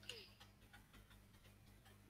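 Near silence with a faint steady hum and a scatter of faint, light clicks: computer keyboard keys being typed.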